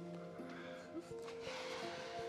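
Soft dramatic background score of slow, held notes that shift in pitch every second or so.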